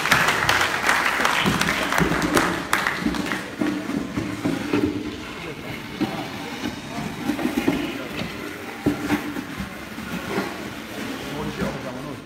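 An audience clapping in a large hall, fading out about three seconds in. It is followed by a low murmur of several people talking at once, with an occasional knock.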